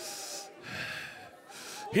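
A man's heavy breaths close to a handheld microphone: a short hissy breath at the start, then a longer one about a second in.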